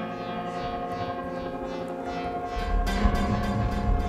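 Electronic music played on synthesizers and drum machines: held synth tones, with deep bass and a quick clicking beat coming in about two-thirds of the way through.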